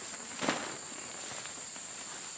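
Steady high-pitched chirring of crickets and other insects in the grass, with a brief soft rustle of the nylon tent fly about half a second in as it is flung over the tent.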